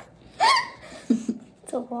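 Women laughing: a short, sharp gasping yelp that rises in pitch about half a second in, then softer bits of laughter, with a spoken word starting near the end.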